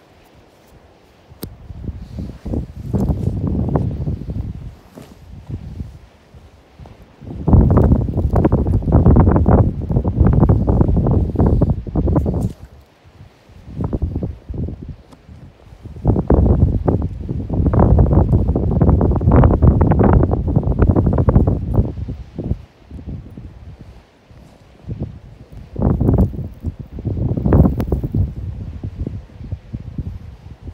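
Wind buffeting the microphone: a loud, low rumbling noise that surges in several gusts of a few seconds each and drops back between them.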